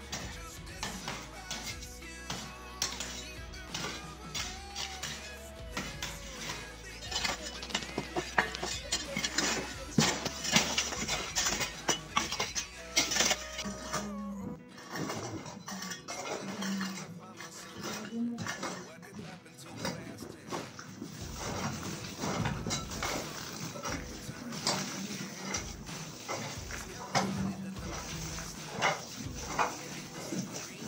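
Hand hoes and a shovel chopping into and scraping loose soil on an earth floor: a steady run of short dull strikes and scrapes, with people's voices behind.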